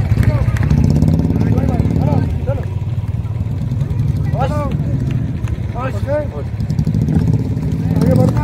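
Motorcycle engine running steadily at low revs, with short voices calling out over it.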